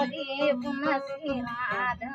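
A woman singing, her voice wavering with vibrato near the end, to her own strummed steel-string acoustic guitar.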